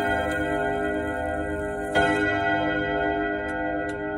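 Rod gongs of a French ODO 30 chiming wall clock ringing, with a fresh hammer strike about two seconds in, and the notes then dying away slowly. The clock's ticking comes through faintly near the end.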